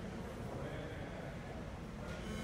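Faint, steady room noise in a large hall: a low hum and hiss with no distinct event.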